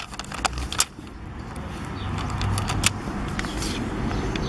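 Plastic sticker sheet and its clear backing crackling and clicking as they are handled and peeled, with several sharp clicks in the first second and another near the end. Under it a low rumbling background noise grows louder in the second half.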